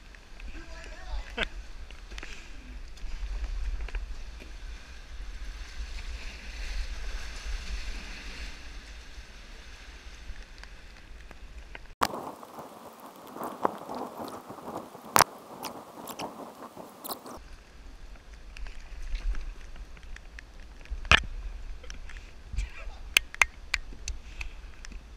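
Paddling a kayak down a flooded creek: moving water sloshing and splashing around the paddle and hull, over a low wind rumble on the bow-mounted camera's microphone, broken by a few sharp knocks. The rumble drops away for about five seconds midway.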